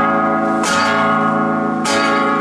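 Acoustic guitar strummed in full chords that are left to ring, with a fresh strum about two-thirds of a second in and another near the end.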